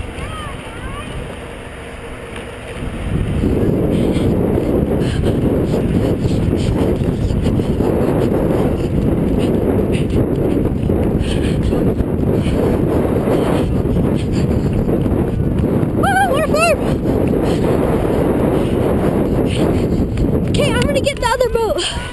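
Heavy, fluttering wind noise on the camera microphone from about three seconds in, as the camera is carried at a run. A brief shouted call comes through about two-thirds of the way in.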